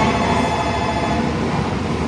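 N700-series Shinkansen train rolling slowly past on the adjacent track: a steady, dense rumble of running noise with faint steady high tones over it.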